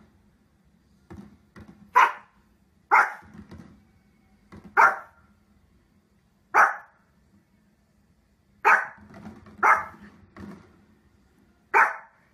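A Pomeranian barking: seven sharp single barks at uneven intervals, with softer short huffs between them.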